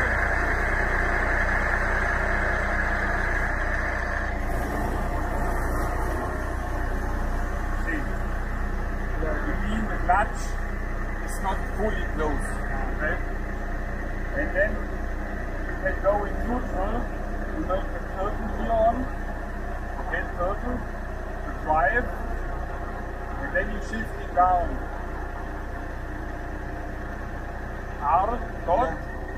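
Diesel engine of a Liebherr LTM1230-5.1 all-terrain crane running steadily, heard from inside the carrier cab, a little louder for the first few seconds, then settling to an even idle. Brief snatches of talk sound over it from about eight seconds on.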